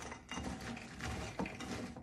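Pecans coated in egg white being stirred with a spatula in a bowl: irregular low scraping and clicking of the nuts against each other and the bowl.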